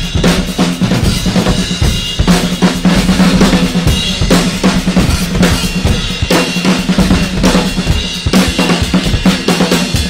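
Two drum kits, one a silver-sparkle Sawtooth Command Series, played together as a duet: dense, fast strokes on snare, bass drum, toms and cymbals with no pause.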